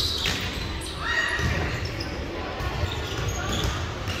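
Indistinct voices echoing in a gymnasium, with low thuds of balls bouncing on the wooden court floor and a sharp knock right at the start.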